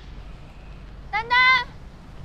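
A woman shouting a child's two-syllable name, drawn out and high-pitched, once about a second in, searching for the child.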